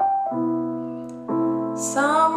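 Piano accompaniment between sung phrases of a jazz ballad: a chord struck about a third of a second in and another a little after a second, each held and fading away.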